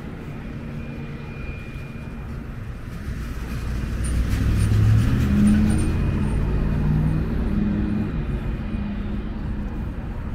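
Road traffic with a motor vehicle passing close by: its low engine rumble swells from about three seconds in, is loudest around the middle, then slowly fades over the steady traffic hum.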